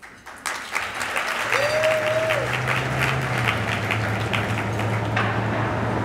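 Audience applauding. A steady low hum comes in about a second and a half in, with a short tone that rises, holds and falls, and the clapping thins out near the end.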